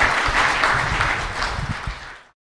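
Audience applauding steadily, dying down in the last half-second.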